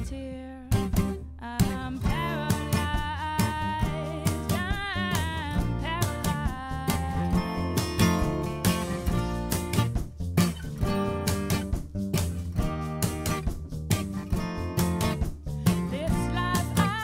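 Live band music: guitar with upright bass and drums, with regular drum hits.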